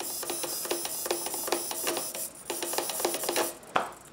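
A small hobby micro servo whining in short, even-pitched bursts, about three to four a second, as it sweeps back and forth following the transmitter's elevator stick. It is responding on channel 2 through a remapped receiver output. The bursts stop about three and a half seconds in, with a single click near the end.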